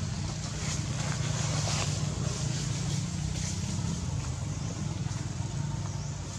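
A steady low engine hum running throughout, under a constant hiss.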